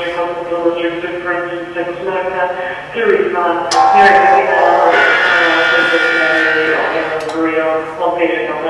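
Fire station alerting system broadcasting a dispatch announcement over the station's loudspeaker: a drawn-out, evenly pitched voice reading out a fire alarm call. Two sharp clicks come through, one near the middle and one near the end.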